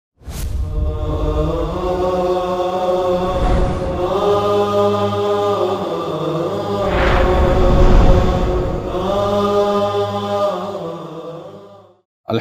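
Opening theme music of slow, chant-like held vocal chords that change every couple of seconds, with a deep rushing swell about seven seconds in; it fades out near the end.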